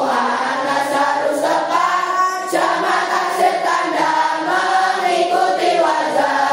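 A large group of children, boys and girls, singing a nahwu nadzom (verses of Arabic grammar) together in unison. The singing runs continuously.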